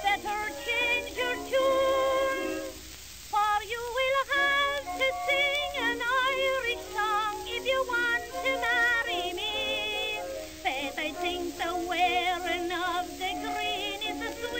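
Early acoustic recording of a woman singing a comic popular song with vibrato over instrumental accompaniment, the sound thin and narrow in range.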